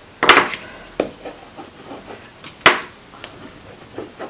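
Chunky wood-cased crayons knocking against the tabletop as they are put down and picked up: three sharp clacks, the loudest just after the start and another about two and a half seconds in, with a few faint ticks between.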